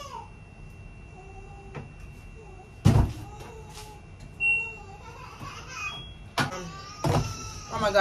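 Washing machine being loaded and set: a heavy thump about three seconds in, then two short high beeps from its control panel and a couple more knocks, with a faint voice in the background.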